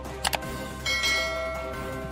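Two quick mouse-click sound effects, then a bright notification-bell chime that rings and fades out, over steady background music.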